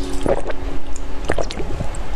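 Close-miked wet mouth sounds of eating jelly: a few short squishes and slurps, about a quarter second, just over a second and a second and a half in, over a few held notes of background music that fade in the first second.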